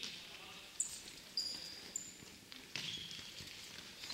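Court shoes squeaking on a wooden gym floor: several short, high-pitched squeaks, mixed with a few sharp knocks.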